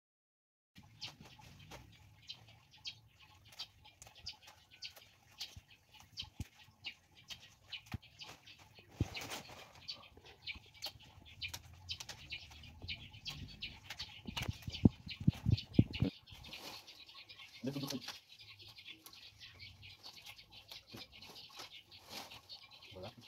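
Cassava leaves and stems being handled and stripped by hand: rustling of leaves with many small crackles and snaps, and a few louder thumps around the middle.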